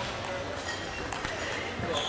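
Sharp clicks of table tennis balls on bats and tables, a few in two seconds, over a steady murmur of voices in a large echoing hall.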